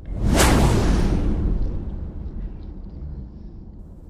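An edited-in whoosh sound effect with a deep boom: a loud sweep that hits just after the start and fades slowly over about three seconds.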